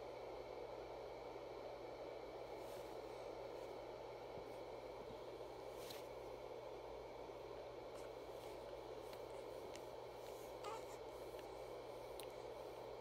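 Quiet steady hiss of a small room, with a few faint clicks and a slight soft bump near the end.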